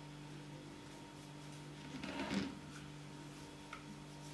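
A cloth rubbing over a glass jar as it is wiped dry, one short rustle about halfway through, over a steady low hum.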